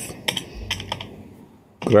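Computer keyboard keys clicking as words are typed, a quick run of keystrokes in the first second that thins out after it.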